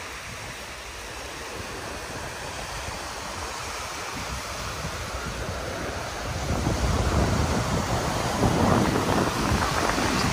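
Small waves washing onto a sandy shore, with wind buffeting the microphone. The wind rumble grows stronger about six and a half seconds in.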